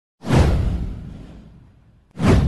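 Intro sound-effect whoosh with a deep low boom underneath, starting suddenly and fading away over about a second and a half.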